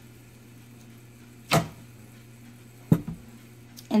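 Two short knocks from a wooden craft board being handled and set down on a table, about a second and a half apart, the second followed by a couple of lighter clicks, over a faint steady low hum.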